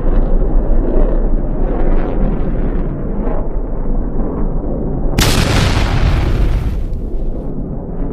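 Continuous low roar of fighter jets in flight, then about five seconds in a sudden loud explosion that fades away over about two seconds.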